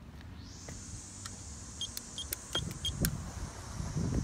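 Four short, evenly spaced beeps from a Linear gate keypad as an access code is keyed in, with small button clicks, then a clunk and low rumble near the end as the gate operator's motor starts.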